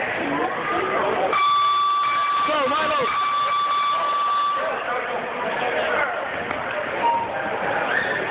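A boxing timekeeper's electronic buzzer sounds one steady tone for about three seconds, starting a little over a second in, marking the start of the round. Spectators' voices and shouts run underneath.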